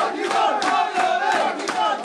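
A group of footballers chanting and shouting together, clapping their hands in a quick steady rhythm.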